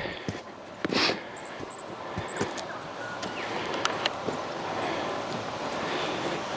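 Footsteps on loose dirt and blasted rock, with scattered short knocks and scuffs and one louder scuff about a second in, over a steady outdoor background hiss.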